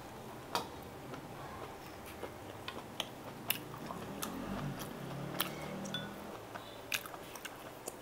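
A person chewing and eating food, with a few sharp, short clicks scattered at irregular times.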